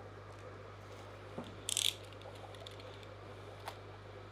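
Small handling noises while a twin-wall polycarbonate sheet is measured and marked with a tape measure: a light click about a second and a half in, a brief scratchy rattle just after, and another click near the end, over a steady low hum.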